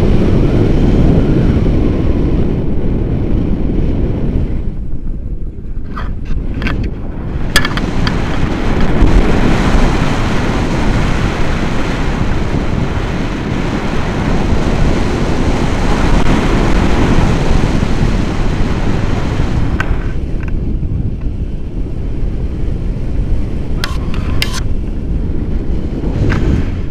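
Rushing air of a paraglider in flight buffeting the microphone of a camera on a selfie stick: a loud, steady low rush that eases a little now and then. A few short clicks come about six to eight seconds in and again near the end.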